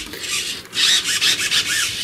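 Small RC hobby servos buzzing with a rasping gear noise as a servo tester sweeps them, swinging the model plane's elevator and rudder back and forth. The noise comes and goes as the servos start and stop.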